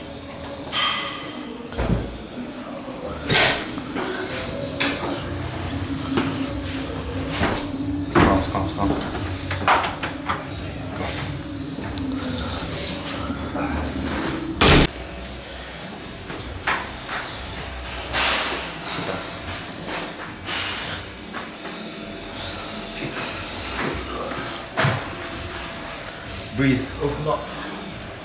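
Scattered knocks and thuds, with one loud bang about fifteen seconds in, like a wooden sauna door shutting, over a low steady hum.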